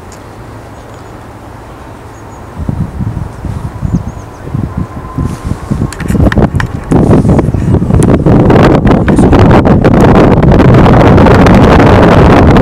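ATR turboprop airliner on its take-off roll and lift-off at take-off power, starting as a faint steady whine and building to a loud, continuous noise from about halfway through. Wind buffets the microphone in gusts throughout.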